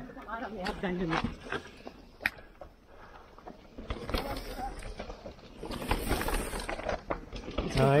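Brief untranscribed voices near the start. After that, mountain bikes roll past on a dirt-and-rock trail, their tyres crunching and rattling over the ground, loudest from about four to seven and a half seconds in.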